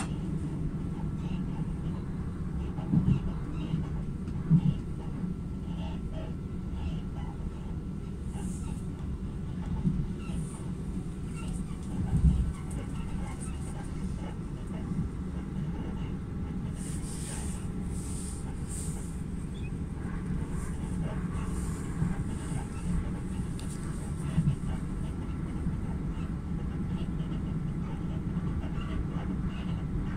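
A Southeastern passenger train running at speed, heard from inside the carriage: a steady low rumble from the wheels and running gear, with several short thumps.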